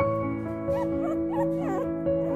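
Background music of sustained chords, with Mi-Ki puppies whimpering over it in a few short, wavering high cries through the middle.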